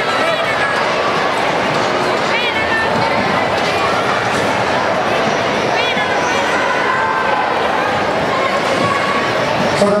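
Steady hubbub of many voices from a crowd of spectators and competitors in a large, echoing sports hall, with a few short high-pitched shouts standing out above it.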